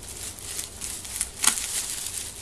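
Scissors cutting through hardened expanding foam inside a plastic bag: irregular crinkling of the plastic with one sharp snip-like click about one and a half seconds in.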